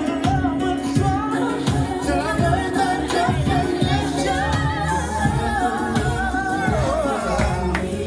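Recorded song with a lead vocal over a steady beat, played for partner dancing.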